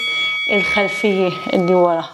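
A woman talking, with a steady high electronic tone held underneath for nearly two seconds that stops near the end.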